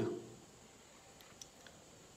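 A pause in a man's speech: the end of a word fades out at the start, then quiet room tone with three faint, short clicks.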